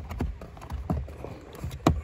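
A new cabin air filter being slid and pushed into its plastic housing in a Fiat 500: a few light knocks and rubbing, with the loudest knock near the end as it goes fully in.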